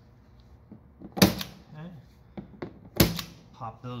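Spring-loaded glazing point driver firing diamond glazing points into a wooden window sash to hold the glass: two sharp metallic snaps just under two seconds apart.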